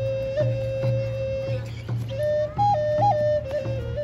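Native American flute playing a slow courting song: a long held note with quick grace-note flicks, rising twice to a higher note near the end, over a steady hand-drum beat.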